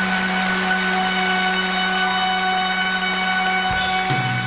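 Stage backing orchestra holding one long sustained chord in the opening of a song's introduction. The low notes drop away just before the end.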